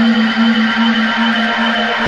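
Synth intro of a post-punk song: one steady low synth note pulsing about four times a second under a dense, hazy high synth wash.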